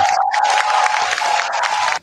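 A crowd cheering and applauding, with one steady high note held through it, cutting off suddenly at the end: a recorded applause sound effect played back, not people in the room.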